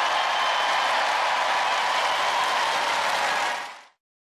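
Studio audience applauding and cheering, a steady wash of clapping that fades out quickly just before the end.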